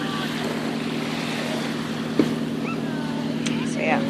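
Steady rush of surf and wind at the water's edge, with a low steady hum underneath and a single click about two seconds in.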